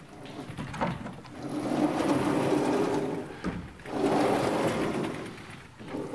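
Sliding chalkboard panels rumbling along their tracks as they are moved up and down, in two long strokes with a short pause between them, after a knock a little under a second in.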